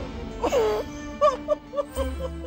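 An elderly woman wailing in grief: one falling cry about half a second in, then short broken sobs, over soft sad background music.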